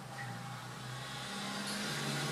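A steady low hum with a few sustained low tones, slowly swelling; no distinct click or snap stands out.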